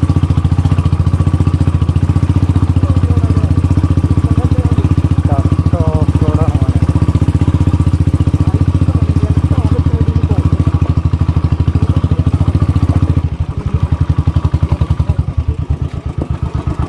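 Motorcycle engine running while the bike is ridden over a rocky dirt trail, its firing pulses a fast, steady beat. About thirteen seconds in the throttle eases, and the engine note drops and turns uneven.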